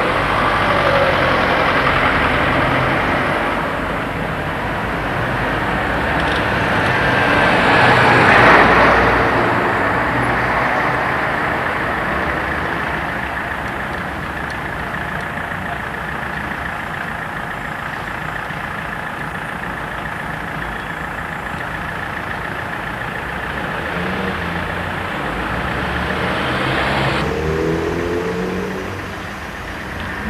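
Road traffic: car engines and tyres passing and idling, with the loudest pass about eight to nine seconds in.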